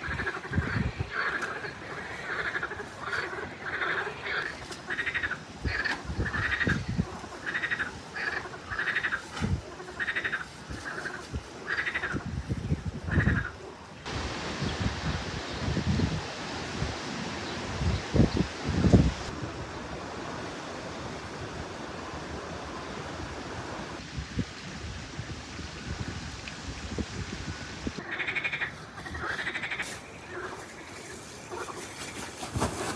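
Frogs croaking in a steady, evenly repeated series, a little more than one call a second, over low soft thuds of soil tipped from a sack onto plastic sheeting. About halfway through, the calls give way to a steady rushing hiss with a few low thumps, and they return near the end.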